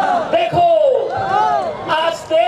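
A man's loud, drawn-out shouting in rising-and-falling calls, one after another, with crowd noise behind it.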